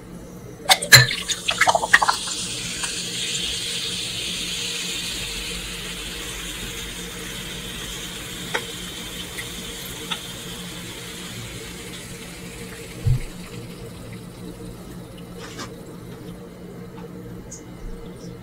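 Carbonated soda poured from a can into a glass of ice, with a few sharp clinks as the pour starts. A long fizzing hiss follows and slowly fades. A single soft knock comes about 13 seconds in.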